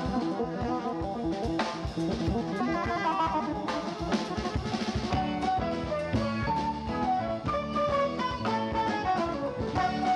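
Jazz fusion band playing live: drum kit, electric guitar and a horn and saxophone section, with the melody stepping downward in the second half.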